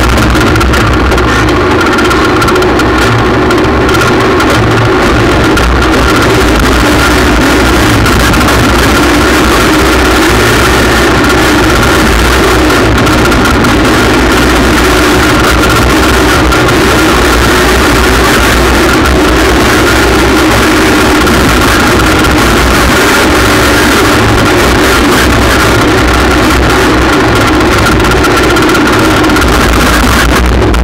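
Small tractor's engine running steadily under load while driving over a dirt track, loud and close, its pitch rising and falling gently with the throttle.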